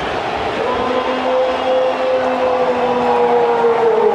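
A broadcast commentator's long, drawn-out goal call held on one note, over background stadium noise.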